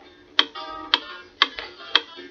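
Clock ticking as the page-turn signal of a read-along record: four sharp ticks about two a second, each followed by a short ringing musical tone. It signals that it is time to turn the page.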